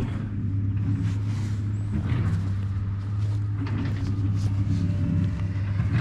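Farm tractor engine running steadily at a constant speed, a low even hum with no change in pitch.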